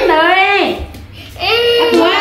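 A toddler crying in two high-pitched wails, the first sliding down and breaking off under a second in, the second starting again about a second and a half in.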